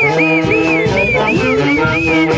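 Andean folk band playing: saxophones and clarinets with a quick run of short, high, arching notes over sustained lower parts.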